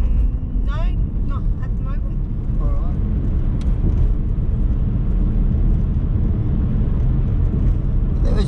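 Steady low rumble of a car driving on an open road, heard from inside the cabin. Quiet voices come and go in the first three seconds.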